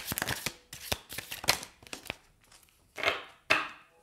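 Oracle cards being shuffled by hand, a quick run of card clicks for about the first second and a half, then a couple of soft swishes as a card is drawn and laid on the table.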